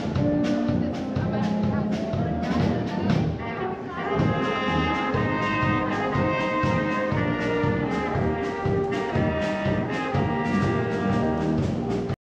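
A brass band playing live on an open-air stage: held brass chords over a steady beat, heard through the stage's sound system.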